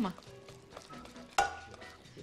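Wooden spoon scraping a wet clay-and-bran paste out of a ceramic bowl into a frying pan: a faint, soft wet scraping. One sharp knock with a brief ring comes about one and a half seconds in.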